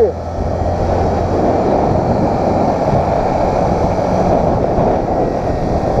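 Small motorcycle riding along a street: a steady rush of wind over the microphone with the engine running underneath.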